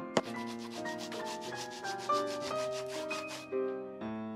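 Metal hand scraper rasping over the cork-filled bottom of a boot sole in quick, evenly repeated strokes that stop about three and a half seconds in, after a single sharp click at the start. Soft piano background music plays underneath.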